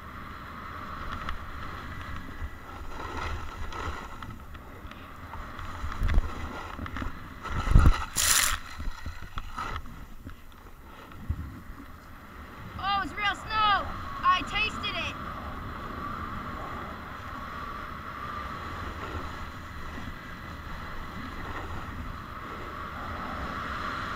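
Snowboard sliding over snow with wind rushing on the action camera's microphone, a steady rushing noise. There are two hard knocks, the louder about eight seconds in, and a quick run of short pitched calls a little past halfway.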